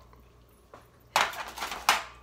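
Aluminium foil lining a baking tray crinkling as it is handled: one brief rustling burst that starts about a second in and lasts just under a second, sharpest at its start and end.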